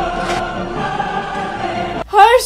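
Background music: a choir holding long, steady notes.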